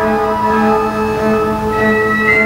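Pipe organ playing a lively eighteenth-century tambourin: a low note repeats about four times a second under a bright melody.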